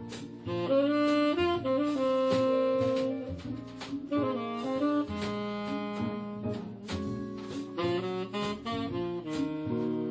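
Live small-group jazz: a tenor saxophone comes in about half a second in, playing long held notes and then shorter phrases over bass and drums, with guitar.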